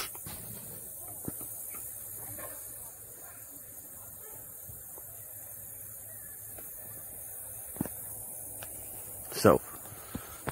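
Faint, steady outdoor background hiss picked up by a phone microphone, with a couple of small handling clicks. Near the end comes one short loud vocal sound, like a sigh or grunt.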